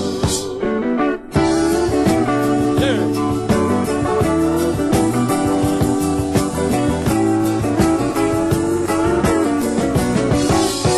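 Live country band playing an instrumental break led by electric guitar, with quick picked notes over the rhythm section. The sound briefly drops out about a second in.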